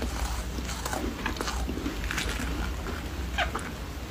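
A bar of frozen foam ice being worked out of a soft silicone mold, close-miked: scattered small clicks and short, falling squeaks.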